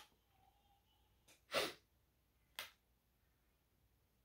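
A person sniffing sharply through the nose at a scent strip, two main sniffs about a second apart, the first louder.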